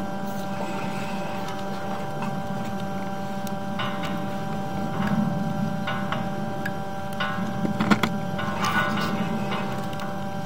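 Steady electrical hum from the sewer inspection camera equipment. From about four seconds in it is overlaid by intermittent clicks and rattles as the camera's push cable is fed farther down the side sewer.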